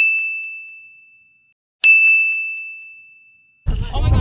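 Two bright bell-like dings about two seconds apart, each one clear high tone that rings out and fades away: an added sound effect marking the gator count. Near the end, wind on the microphone and voices cut back in.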